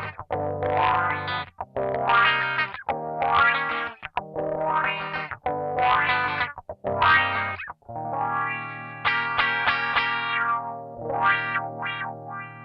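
Distorted electric guitar played through a BOSS MS-3's Reso Wah effect: a run of short, rhythmic chord stabs, then two longer held chords near the end.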